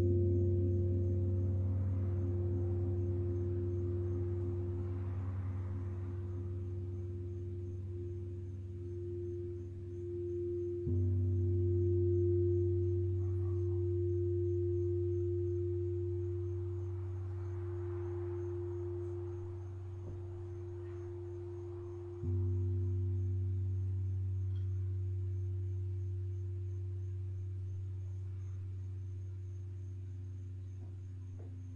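Singing bowls ringing: a steady, wavering mid-pitched bowl tone sounds throughout, while a deep struck tone, already ringing, is struck again twice about eleven seconds apart, each strike fading slowly.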